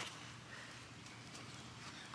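Quiet outdoor background: a faint, even hiss with no distinct sounds.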